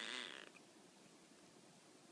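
Tonkinese cat's answering meow when called, trailing off in the first half second, then near silence.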